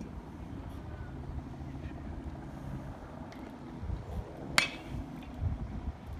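A baseball bat hitting a ball once, a sharp crack with a brief ring about four and a half seconds in, over steady wind noise on the microphone.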